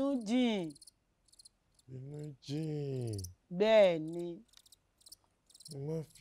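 Crickets chirping faintly under a few short stretches of spoken dialogue, heard plainly in the gaps between the lines.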